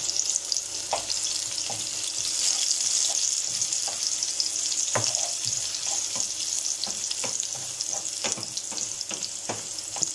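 Chopped onion and garlic sizzling steadily in hot oil in a frying pan, stirred with a wooden spoon, with a few light knocks of the spoon against the pan (the clearest about five seconds in).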